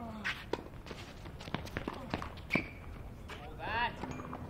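Tennis rally on a hard court: sharp pops of racket strings hitting the ball and the ball bouncing, about once a second, with shoe squeaks and running footsteps. A short voice call comes near the end.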